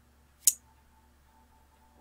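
A single sharp computer mouse click about half a second in, against quiet room tone.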